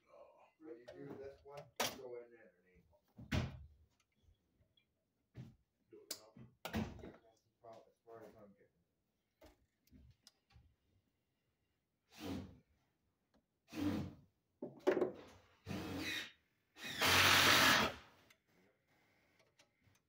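Handling noises from work at an open breaker box: scattered knocks and clicks of a screwdriver and cable against the metal panel, and a loud noisy scrape lasting about a second near the end.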